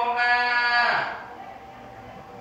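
A man chanting a Buddhist prayer, holding one long steady note that ends about a second in.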